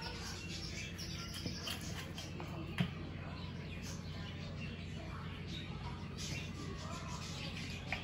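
Quiet room sound: a steady low hum with faint bird chirps, and a single sharp click a little under three seconds in.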